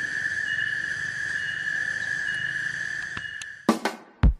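A steady, high-pitched insect drone with a fainter on-off call above it, which drops away a little after three seconds in. Music starts abruptly near the end.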